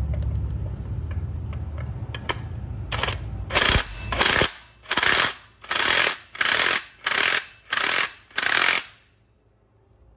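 Cordless impact wrench with a 39 mm socket tightening the centre nut of a Yamaha NVX scooter's clutch assembly after a torque spring change. It runs continuously for about four and a half seconds, then hammers in about eight short bursts as the trigger is pulsed, and stops about a second before the end.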